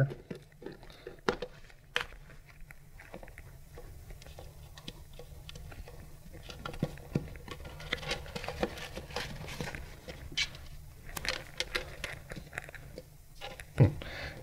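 Hands working a rubber boot off a centrifuge drive spindle and handling small metal parts inside the stainless steel rotor chamber: scattered light clicks and knocks, busier in the second half, over a steady low hum.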